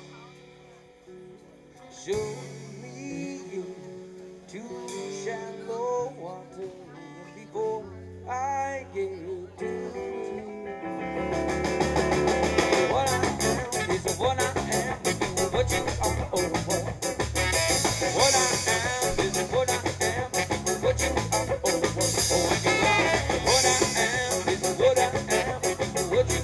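Live band music: a quiet, sparse passage of single guitar notes, then about eleven seconds in the full band with drum kit comes in much louder and keeps a steady beat.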